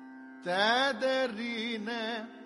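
Carnatic classical music in raga Vakulabharanam over a steady drone. About half a second in, a loud melodic line enters with a rising slide and wavering ornaments.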